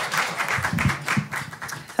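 Audience applauding, dying away.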